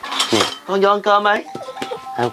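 Spoons clinking against bowls while a meal is served, with short sharp clinks and a brief ringing in the second half.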